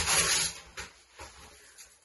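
Newspaper being torn by hand: a tearing sound that ends about half a second in, followed by a few soft paper rustles.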